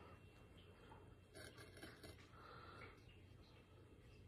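Near silence: room tone, with a faint breath about a second and a half in.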